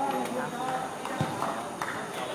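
Men's voices calling and chatting across a football pitch, with two sharp knocks, one about a second in and one near the end.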